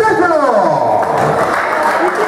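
Audience applause, breaking out about a second in after a voice, and running on as dense, even clapping.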